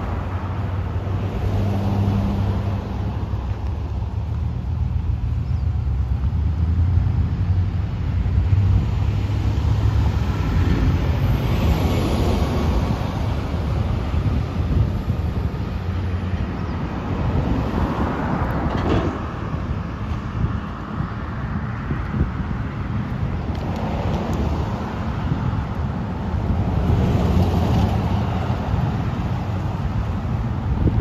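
Road traffic, cars passing one at a time with a swell of tyre and engine noise about every six to eight seconds, over a steady low rumble.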